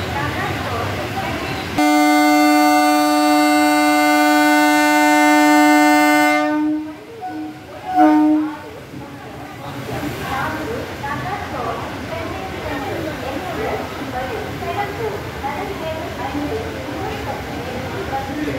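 Electric locomotive horn, styled as a steam engine, sounding one long blast of about five seconds and then two short toots as it arrives. Platform crowd chatter fills the rest.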